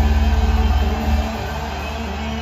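Punk rock band playing live through a loud outdoor PA, with drums and distorted guitars. About a second in the level drops, and held guitar and bass notes ring on.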